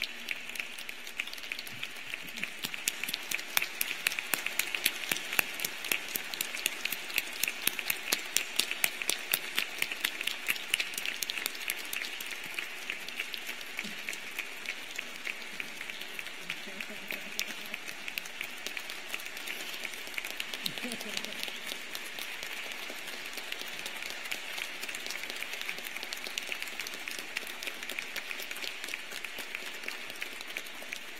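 A large audience applauding, many hands clapping at once, loudest for the first ten seconds or so and then holding steady.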